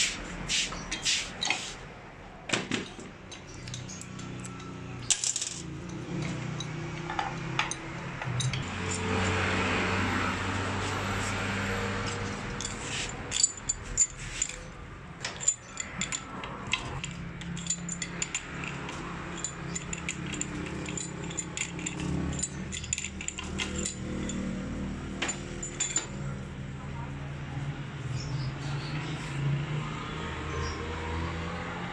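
Scattered metallic clicks and clinks of hand tools and pliers working on a Toyota 5L diesel injection pump head held in a steel vise, with small metal parts clinking against a steel pan, over a steady low hum.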